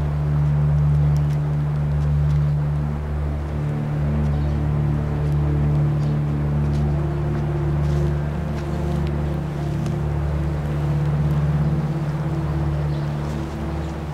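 A steady low drone made of several held low tones, with faint scattered clicks above it.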